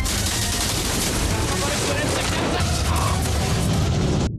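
Action-film soundtrack of a large explosion sequence: a continuous dense blast and low rumble with rapid crackling like gunfire, under a music score.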